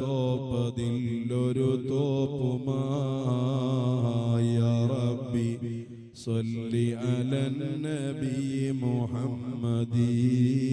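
Islamic devotional chanting: a wavering, melodic vocal line over a steady low drone, with a brief break about six seconds in.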